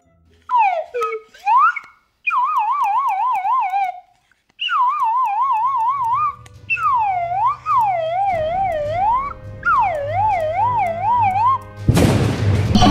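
A whistle played in short improvised phrases: pitch sweeps down and up in long glides and wavers quickly up and down, with brief gaps between phrases. A low background drone comes in about halfway.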